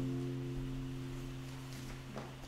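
The last held chord of a hymn's instrumental accompaniment, left sounding after the singing has stopped and slowly dying away.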